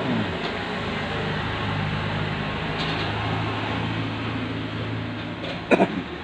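Steady low hum over a hiss of background noise, a little louder in the middle.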